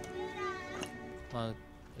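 A cat meows once: a single drawn-out call that rises and then falls in pitch, heard over background music.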